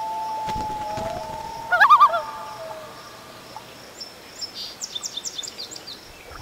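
Common loon calling across the water: a long, steady wailing note, broken about two seconds in by a loud, wavering, quavering burst, then fading out. Faint high chirps follow near the end.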